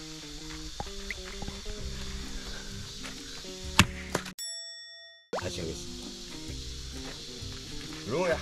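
A single sharp axe blow into a firewood log about four seconds in, over steady background music. The blow fails to split the log because of a knot in the wood. Just after it, the sound drops out for about a second, leaving only a short ringing ding.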